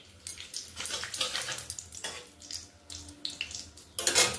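Whole bay leaves sizzling in hot oil in a kadhai, a steady frying hiss broken by irregular little crackles and pops.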